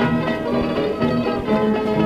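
Balalaika orchestra playing the instrumental introduction as a melody of plucked notes, heard from a 78 rpm shellac record.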